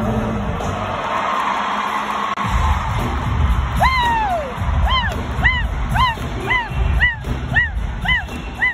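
Live concert music through an arena PA system, heard from the stands. The bass is missing for the first couple of seconds, then a heavy beat comes in, and from about halfway through a short rising-and-falling tone repeats about twice a second over it.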